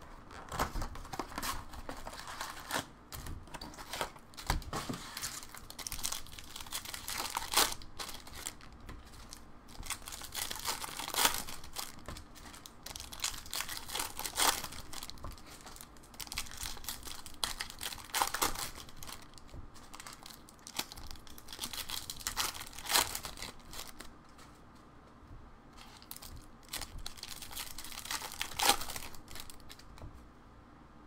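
Plastic wrap and card-pack wrappers being torn open and crinkled by hand, a run of crackling rips.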